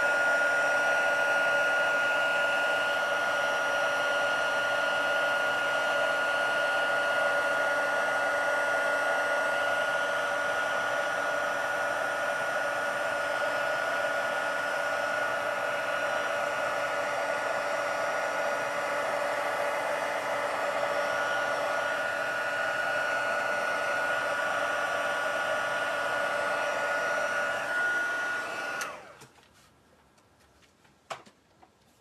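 Embossing heat tool blowing steadily with a high whine, heating clear embossing powder until it melts to a shiny finish. It is switched off about a second before the end and winds down quickly.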